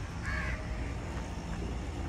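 A bird gives a single short call about a third of a second in, over a steady low background rumble.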